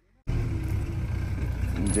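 Diesel engine of a JCB backhoe loader running close by: a steady low rumble that cuts in suddenly a quarter of a second in.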